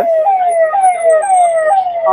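Emergency vehicle siren sounding a repeating falling wail, each sweep dropping in pitch and snapping back up about twice a second.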